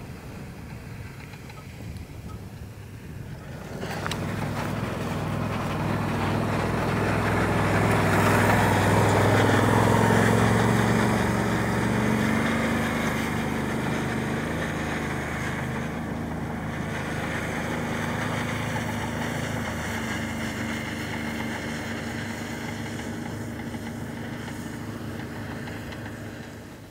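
Engine of a side-by-side utility vehicle carrying a weed-spray rig, running steadily as it drives across the pasture spraying. It grows louder to a peak about ten seconds in as it comes close, then slowly fades as it moves away.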